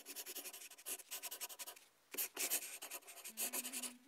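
Pen scratching on paper in quick strokes, coming in bursts with a short pause midway. A low held note comes in near the end.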